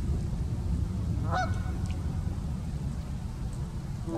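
A single goose honk about a second and a half in, short and wavering in pitch, over a steady low outdoor rumble.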